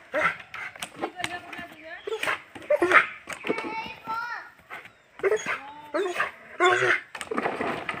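A dog jumping and snapping at a ball hung on a cord, with scattered knocks and clicks from its leaps and the swinging ball, and short whines or yips in between.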